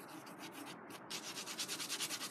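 Graphite pencil shading on drawing paper: quick back-and-forth scratchy strokes, faint at first and picking up into a fast even rhythm of about eight strokes a second about a second in.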